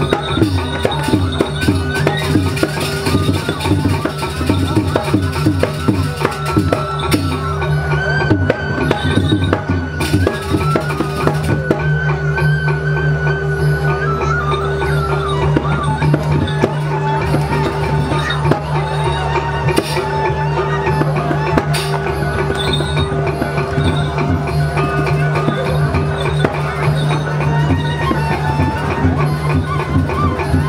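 Balinese gamelan music: gongs and bronze metallophones ring with steady, sustained tones over a dense, fast run of drum and percussion strikes.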